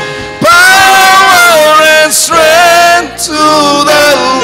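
Live gospel praise singing through a PA: amplified voices, a male lead among them, singing long held phrases with short breaks between them.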